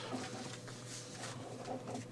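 Quiet room tone with faint rustling of paper sheets handled at a lectern.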